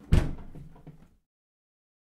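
Refrigerator door shutting with one sharp thud about a tenth of a second in, followed by a couple of smaller knocks that die away within about a second.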